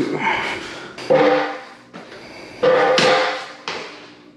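Two metallic clanks about a second and a half apart, each ringing on and dying away over about a second, as a Sur-Ron electric dirt bike is lifted down off its metal work stand and set on its kickstand.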